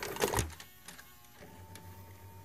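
Intro logo sound effect: a quick cluster of clicks and knocks, then a steady low hum with a thin high tone joining it about a second and a half in.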